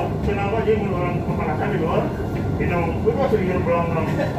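Voices talking over a steady low running noise inside the cab of the Kalayang driverless airport skytrain.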